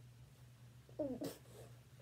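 A short, quiet vocal sound about a second in, gliding down in pitch and ending in a breathy hiss, over a faint steady low hum.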